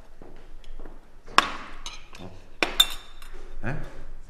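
A metal serving spoon and cutlery clinking against china plates and serving dishes during food serving: one sharp clink about a second and a half in, and a few quick ringing clinks near the three-second mark.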